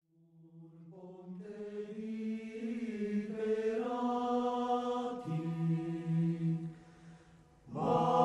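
Slow choral singing, sustained chords held by low voices, fading in from silence over the first second or so. The voices thin out about seven seconds in, then come back louder at the very end.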